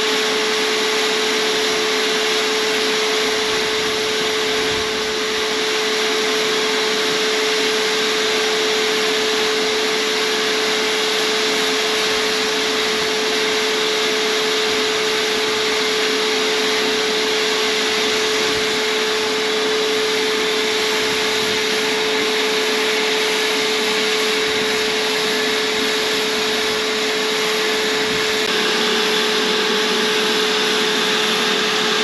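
Electric paint sprayer running steadily: the hose-fed air unit drones with a constant hum, and air and paint hiss from the gun as the tractor is sprayed.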